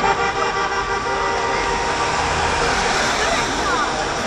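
Steady street noise: a car passing on the wet road, with faint voices in the background.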